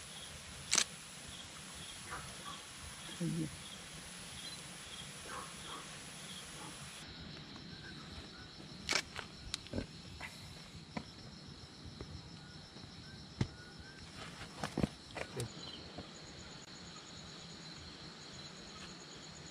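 Night insects calling: a high chirp repeats about twice a second, then after a cut a steady, high, pulsing chirr carries on. Several sharp clicks of handling noise come between about nine and fifteen seconds in.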